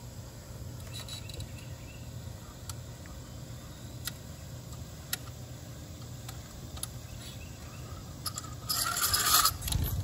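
Tension being let off a fence stretcher on woven wire fence: a few scattered metallic clicks, then near the end a louder scraping rattle lasting about a second as the chain and wire slacken.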